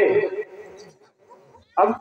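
A man's amplified voice through loudspeakers draws out the last word of a spoken line and fades with a short echo about half a second in. A brief quiet gap with faint murmur follows, and then the voice starts again near the end.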